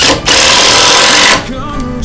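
A power tool in a woodshop running in one loud burst of about a second, starting and then cutting off suddenly.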